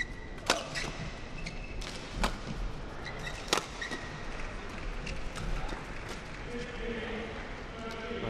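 Badminton rackets striking a shuttlecock in a fast doubles rally: several sharp smacks, the loudest about half a second in and another about three and a half seconds in. Between them come short high squeaks of court shoes on the floor.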